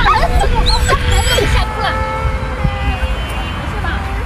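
A small child crying, with an adult's voice.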